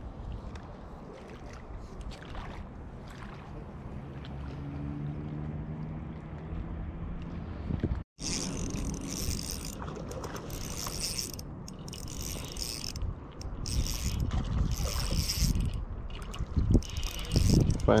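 Spinning fishing reel being cranked to bring in a hooked trout, a mechanical whirring of the reel turning. The sound drops out briefly about halfway, and bursts of hissing noise come in the second half.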